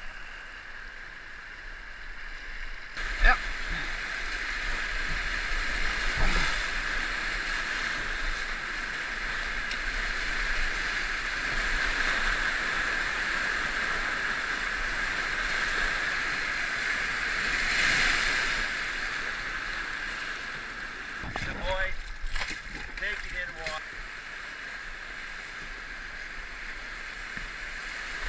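Whitewater rapids rushing around a canoe as it runs the rapid, the rush swelling to its loudest about two-thirds through and then easing. A sharp knock comes about three seconds in, another a few seconds later, and faint voices near the end.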